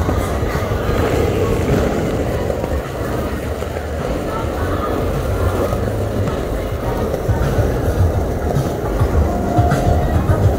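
City street ambience: a steady low rumble of traffic and rolling wheels, mixed with voices and music in the background.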